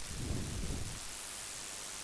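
A brief low rumble on the microphone for about the first second, then steady recording hiss.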